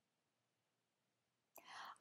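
Near silence, then a short, faint breath drawn in about a second and a half in, just before speech resumes.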